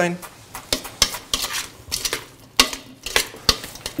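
Irregular knocks and clicks of kitchen work: a knife chopping parsley on a plastic cutting board, then utensils and hands working potato salad in a stainless steel bowl.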